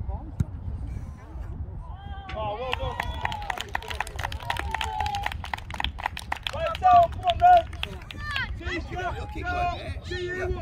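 Children and adults shouting and calling out across a youth football pitch during play, with two loud shouts a little after the middle. A quick run of sharp clicks sounds through the middle, over a steady low rumble.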